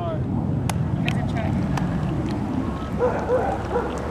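A steady low rumble of wheels rolling over rough asphalt, with a few light clicks.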